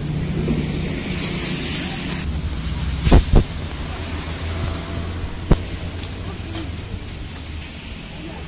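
Street noise with a motor vehicle's engine running close by, a steady low hum. Two sharp knocks come close together about three seconds in, and another about five and a half seconds in.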